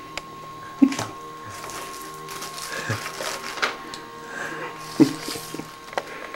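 Indistinct low voices and short rustling or handling sounds, over a steady thin high tone that runs throughout.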